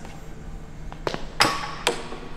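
Metal gym hardware clinking: three sharp clacks, the loudest about one and a half seconds in with a short ring.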